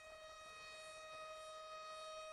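Faint, steady sustained tone with overtones from the film's soundtrack, holding one pitch and slowly swelling in loudness.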